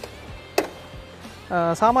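A single sharp click from a Mitsubishi Pajero's bonnet safety catch being released as the bonnet is lifted, with a fainter tick just before it.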